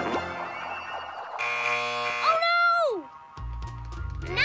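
Cartoon sound effects over music: a harsh game-show buzzer sounds about a second and a half in, marking a mistake, followed by a short pitched swoop that rises and then falls away. A low beat comes in near the end.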